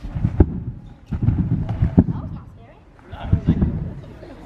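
A trampoline bed thudding as a person bounces on it, with three heavy landings about a second and a half apart.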